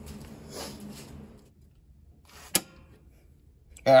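Faint rustling of movement, then one sharp click about two and a half seconds in.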